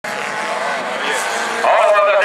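A pack of folkrace cars racing, several engine notes at full throttle overlapping and gliding up and down. The sound grows louder, with rising pitch, about one and a half seconds in as the cars accelerate.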